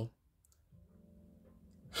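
Near silence: room tone with a couple of faint clicks, and a faint steady low hum in the second half.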